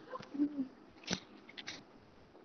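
A few faint, sharp clicks, the clearest about a second in, with a brief low murmur just before it.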